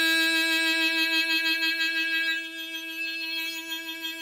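Diatonic harmonica sounding a single note held steadily, one unwavering pitch rich in overtones, easing down in volume about two and a half seconds in.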